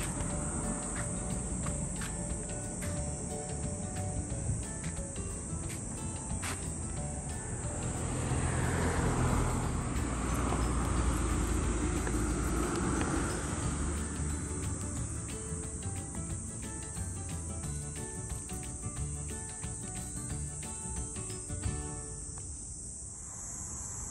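A steady, high-pitched insect drone, like crickets, with a low rumble on the microphone that swells in the middle and scattered faint tones underneath.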